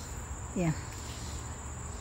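Insects calling outdoors: one steady, high-pitched buzz that runs on unbroken, over a faint low hum.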